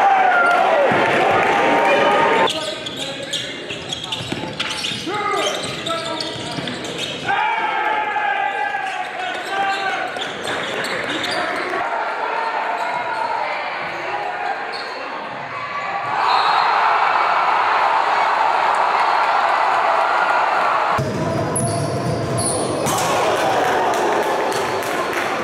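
Gym game audio from several basketball clips: a basketball bouncing on the court amid crowd voices and shouts. The sound changes abruptly several times as one game clip cuts to the next, and the crowd is loudest for a stretch in the second half.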